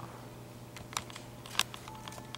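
A few sharp clicks of computer keys being pressed, around one second in and again in a quick cluster near the end, as the projected slides are paged on. A steady low hum sits underneath.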